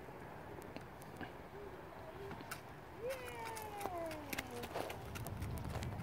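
A young child's voice making one long sliding sound about three seconds in: a quick rise, then a slow fall in pitch. Alongside it come scattered crunching clicks of footsteps on wood-chip mulch.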